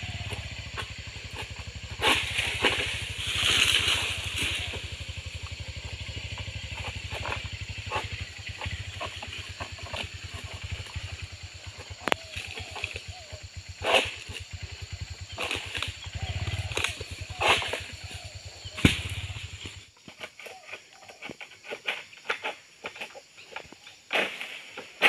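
Sharp cracks and leafy rustling as a long-handled pole sickle cuts oil palm fronds high in the crown and they come down, the loudest cracks several seconds apart. Under it runs a steady low engine hum that stops abruptly about 20 seconds in, followed by lighter crackling.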